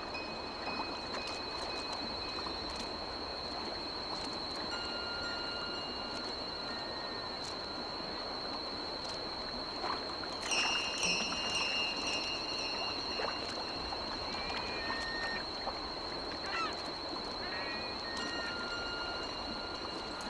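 A gull calling in short runs of high cries over the steady rush of a stream, the calls loudest about ten seconds in, with a few light splashes.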